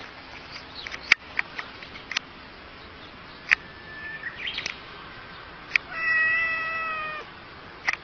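A domestic cat gives one drawn-out meow, just over a second long and falling slightly in pitch, about six seconds in. A few sharp clicks come before it.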